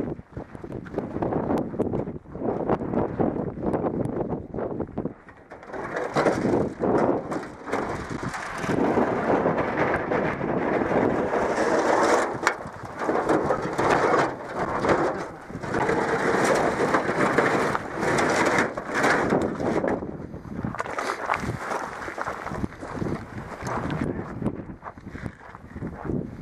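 Footsteps crunching on gravelly dirt, with gear and clothing rustling close by: a dense run of short crunches and scuffs that thins out in places and then picks up again.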